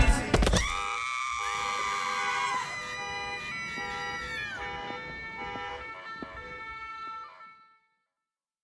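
A sharp hit as the music cuts off, then a siren wailing with pulsing tones, its pitch dropping a couple of times as it fades out about seven and a half seconds in.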